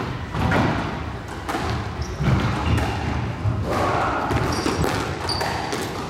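Scattered knocks and thuds echoing in a squash court, with a few short high squeaks in the second half: trainers on the wooden court floor and a squash ball bouncing.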